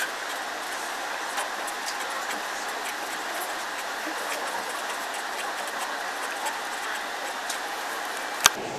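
Felt-tip marker writing on a paper card on a wooden table: faint scratchy strokes and small ticks over a steady background hiss.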